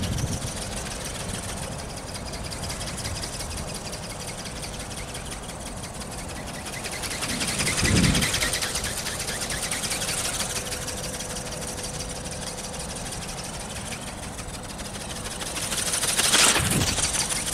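Electric ornithopter's small brushless motor and gear train running with a steady, rapid mechanical buzz as its film wings flap. It swells louder as it passes close overhead about eight seconds in and again near the end, with wind rumbling on the microphone.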